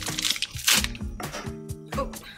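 Background music with a steady beat, and about two-thirds of a second in, a brief wet splash as a shrimp patty is laid into oil in a frying pan.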